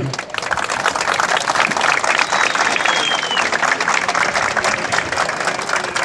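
Crowd of rally participants applauding, steady clapping from many hands. A brief thin high tone, falling slightly at its end, sounds above the clapping about two seconds in.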